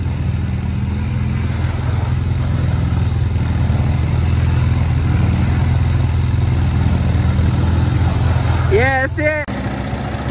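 ATV (quad bike) engine running steadily at low revs close by, a constant low hum. A voice calls out briefly near the end, and the sound cuts off just after.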